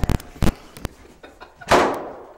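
A few sharp knocks and clicks, then a door banging shut with a loud slam near the end.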